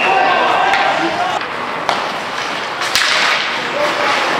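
Ice hockey referee's whistle blast that stops about half a second in, followed by two sharp impacts about a second apart.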